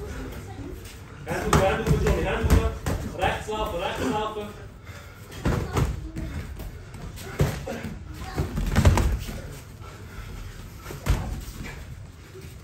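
Sharp slaps and thuds of kickboxing punches and kicks landing on gloves and bodies, several single hits spread through the second half, with shouted voices in the first few seconds.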